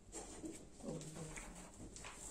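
Faint, indistinct murmur of a man's voice in a small room, too low for words to be made out.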